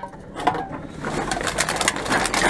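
Aluminium drink cans and plastic bottles clinking and rattling against each other and the wire basket as they are handled in a shopping trolley, a quick run of clinks in the second half.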